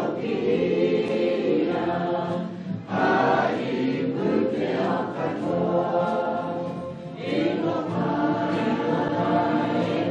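A group of voices singing together as a choir, in long sung phrases. There are brief breaks between phrases about three and seven seconds in.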